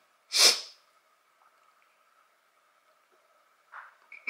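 A woman sneezes once, sharply, about half a second in.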